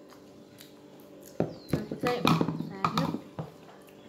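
Quiet room tone, then a sharp knock about a second and a half in, followed by a couple of seconds of clicking handling noise and short wordless voice sounds close to the microphone as a plastic bowl is brought up against it.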